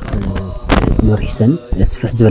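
A low male voice chanting a menzuma, an Islamic devotional song, on one repeated line, with sharp percussive beats about two a second.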